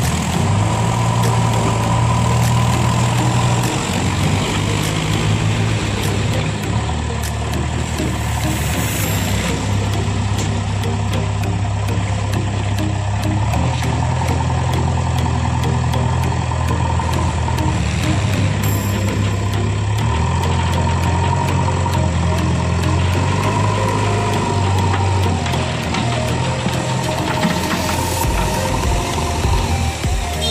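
JCB 3DX backhoe loader's diesel engine running loudly, its pitch stepping up and down every few seconds as the machine works.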